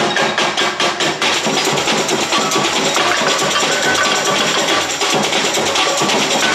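Samba bateria drumming: surdo bass drums and snare-type drums played with sticks, keeping a fast, steady samba rhythm.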